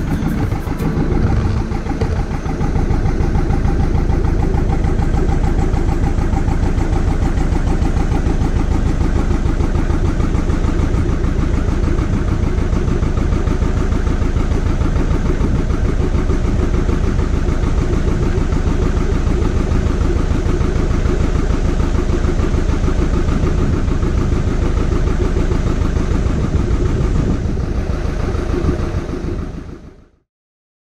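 Narrowboat's diesel engine running steadily as the boat cruises, fading out near the end.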